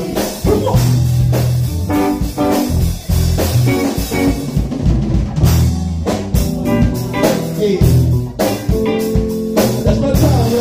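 Live band playing: an electric bass line carries the low end over a drum kit, with keyboards, in a blues or funk groove.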